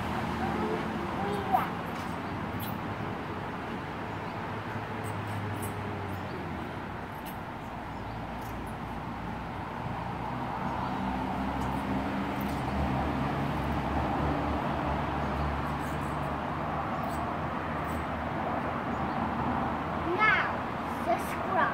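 Steady outdoor background hum with a low, shifting drone, and a single sharp knock about one and a half seconds in.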